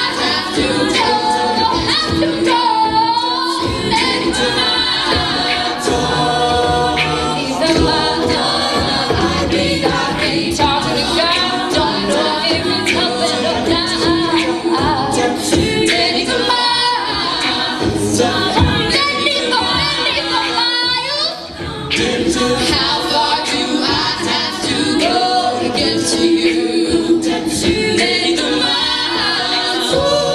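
Co-ed a cappella group singing live through microphones, a female lead over mixed-voice backing harmonies, with vocal percussion keeping a steady beat.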